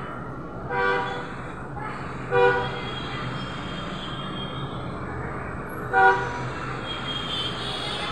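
Three short vehicle-horn toots: one about a second in, one at about two and a half seconds, and one about six seconds in, over a steady low background hum.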